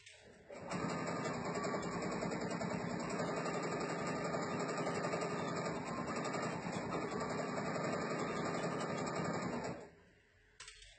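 Bernina sewing machine with a walking foot stitching steadily at a fast, even rate. It starts about half a second in and stops just before the end.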